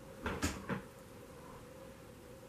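Three quick knocks in a row within the first second, the middle one the loudest, over a faint steady hum.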